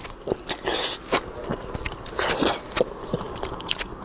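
Biting into and chewing a soft braised pork-skin roll, with a run of irregular mouth clicks and squelches.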